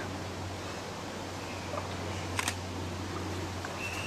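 Steady low hum with faint scattered chirps, and one sharp click about two and a half seconds in.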